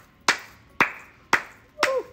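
One person clapping her hands: four even claps about half a second apart, each trailing off briefly.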